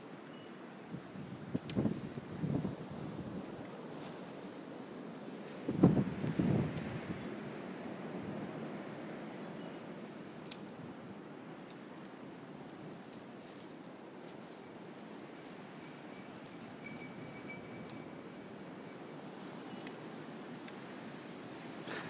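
Steady outdoor hiss of wind on a phone microphone during snowfall, with a few soft low thumps about two seconds in and a louder cluster around six seconds.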